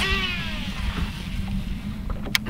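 Baitcasting reel spool whirring out on a cast: a sharp swish, then a high whine that falls in pitch and fades over about a second as the spool slows, over a steady low hum.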